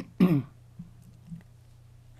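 A man clearing his throat near the start: a sharp cough-like burst followed by a short falling grunt. Then only a low steady hum.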